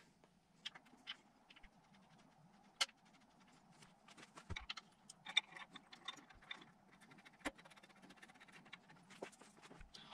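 Faint metallic clicks and light taps of an alternator and its mounting bolts being handled and fitted by hand onto the engine's bracket, with a sharper click about three seconds in and another a little past seven seconds.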